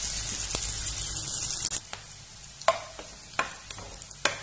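Chopped onions and cumin seeds sizzling in hot oil in a non-stick frying pan, the sizzle fading a little before halfway. In the second half a spatula clicks against the pan three times as the onions are stirred.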